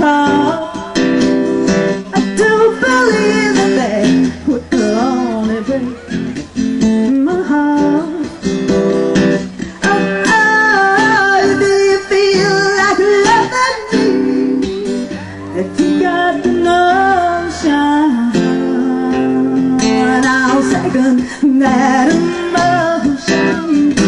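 Acoustic guitar strummed in a live performance, with singing over it at times.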